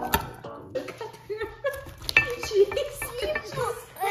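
Piano background music ending about a second in, then a toddler's high voice chattering and babbling without clear words.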